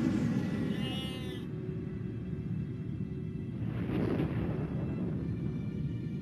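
Documentary soundtrack for atomic-bomb test footage: a continuous low rumble of the blast under ominous music. A brief wavering high tone comes about a second in, and the sound swells again about four seconds in.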